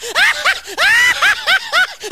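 High-pitched giggling laughter: a quick run of rising-and-falling squeals, several a second.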